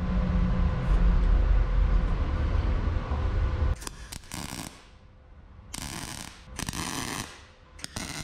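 A low rumble for the first few seconds, then a MIG welder tack welding car-body sheet steel: three short crackling bursts of arc, each about half a second, starting about four seconds in.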